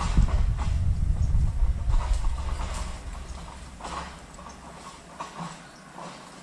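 A hooked tilapia splashing at the pond's surface in several short bursts as it is fought and hauled out of the water on a pole and line, over a heavy low rumble that dies away about halfway through.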